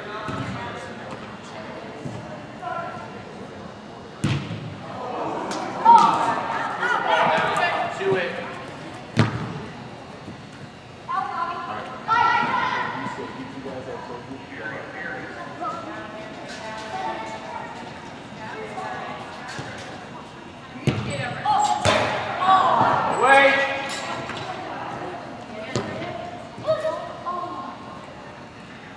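Indoor soccer match in a large echoing hall: a ball kicked and thudding a few times, sharp impacts standing out, with players and spectators shouting in between.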